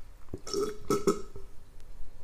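A man gulping a drink from a glass, three throaty swallows in quick succession around the middle.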